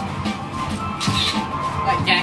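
Background music with a beat.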